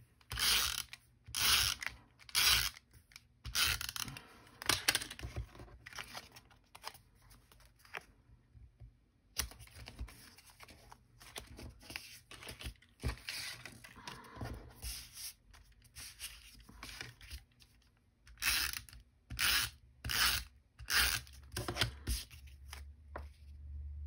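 Adhesive tape runner (a snail-type runner) pulled across card stock in short strokes, each a brief scratchy, ratcheting zip, with a group of strokes in the first few seconds and another near the end; soft paper handling in between.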